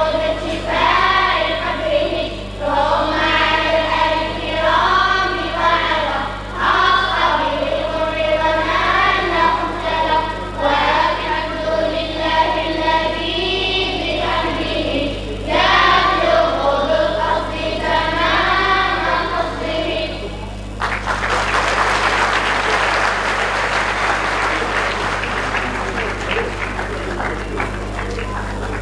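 A group of young girls singing together in unison over a hall's amplified sound system, with a steady low hum underneath. About three-quarters of the way through, the singing stops and audience applause takes over.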